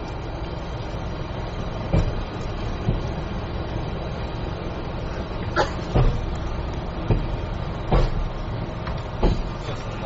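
Cabin sound of JR Hokkaido's rail-running dual mode vehicle, a converted minibus: a steady engine and running drone, with about seven sharp, irregularly spaced knocks as its wheels pass over the track.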